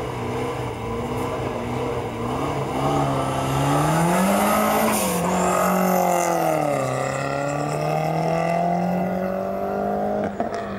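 Ford Escort hatchback's engine pulling away under throttle: steady revs at first, then rising in pitch about three to five seconds in, dropping sharply around seven seconds in and climbing again near the end.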